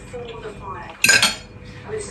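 A metal fork clinks sharply against a plate about a second in, ringing briefly.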